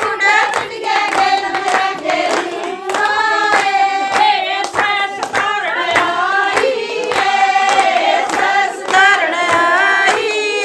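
Women singing a Haryanvi folk song together, with steady rhythmic hand-clapping keeping the beat.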